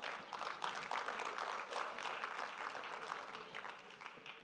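A church congregation applauding, many hands clapping at once, thinning out near the end.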